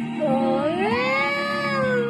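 A woman singing over a backing track. Her voice slides up into a long held note about half a second in and eases slightly down near the end.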